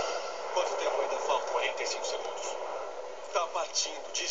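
Film soundtrack played from a computer's speakers and picked up by a phone: faint, muffled voices over a steady hiss.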